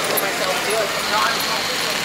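Steady outdoor street noise with faint, brief voices in the background.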